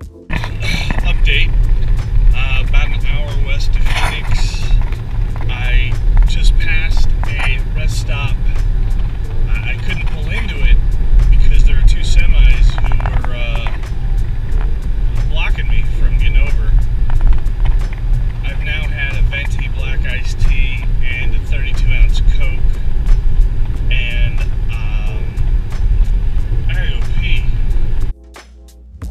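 Loud, steady low rumble of road and wind noise inside a moving car's cabin, with a man's voice talking over it.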